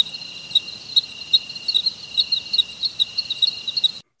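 Crickets-chirping sound effect: short high chirps repeating a few times a second over a steady high trill. It cuts in and out abruptly, the comic 'crickets' for a question met with no answer.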